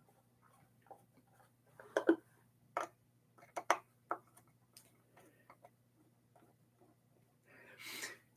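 Phillips screwdriver clicking and scraping in the screws of a guitar's back cover as they are backed out: scattered light clicks, the loudest between about two and four seconds in, over a faint steady hum.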